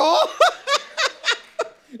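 A person laughing: a run of short, evenly spaced 'ha's, about three a second, that fade toward the end.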